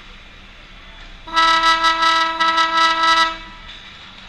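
An ice rink's horn sounding one loud, steady blast of about two seconds, starting just over a second in.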